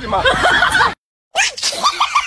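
Laughter, cut off by a sudden silent gap about a second in, then going on as a fast run of short, high-pitched hoots.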